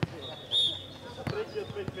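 A few separate dull thuds of a futnet ball hitting the clay court, with a short high-pitched chirp about half a second in that is the loudest sound, over background voices.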